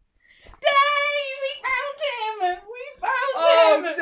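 Two adults squealing and shrieking with delight in high, wavering voices, starting about half a second in, with laughter mixed in and both voices overlapping near the end.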